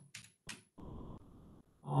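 Two sharp clicks at a computer, less than half a second apart, as a schematic error is stepped to and selected. A soft hiss follows for under a second.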